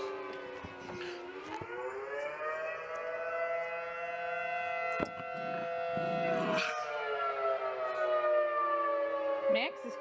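Outdoor tornado warning siren sounding in its routine monthly test: one long, steady wail rich in overtones, its pitch dipping about a second in, then slowly rising and sinking again.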